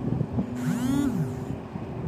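Wind rumbling on the microphone, with a pitched tone that briefly rises and falls near the middle.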